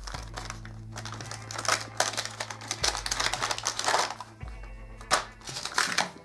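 Cardboard box and clear plastic packaging tray being handled and opened, with repeated rustles, scrapes and crinkles.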